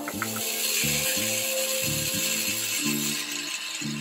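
A steady, harsh hiss of metalwork on steel tubing, under background music with a rhythmic bass line.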